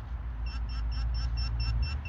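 Handheld metal-detector pinpointer (GP-Pointer) beeping rapidly, about six or seven short high beeps a second, starting about half a second in. The rapid beeping signals a buried metal object close to the probe tip.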